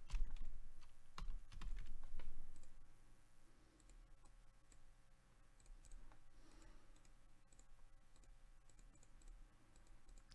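Computer mouse and keyboard clicks: a cluster of louder clicks in the first few seconds, then sparse faint clicks.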